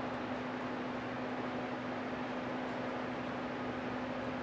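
Steady room tone: an even hiss with a low steady hum, typical of a room's ventilation or air handling.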